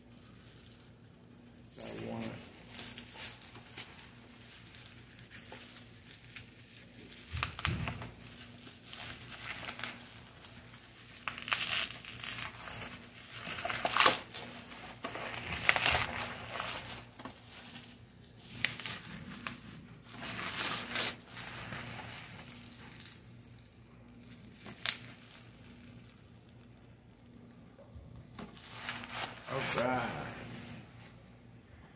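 Plastic and paper packaging being crinkled and torn by hand in irregular bursts, loudest in the middle, over a faint steady low hum.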